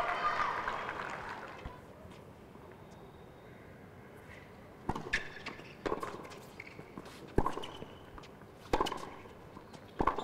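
Tennis ball struck by rackets in a short rally: a serve and then three more sharp hits, each about a second to a second and a half apart.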